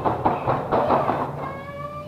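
Rustling, rattling and knocking of a woven floor mat being lifted off the floor, dense through the first second or so, then dying away. A faint steady tone that rises slightly comes in near the end.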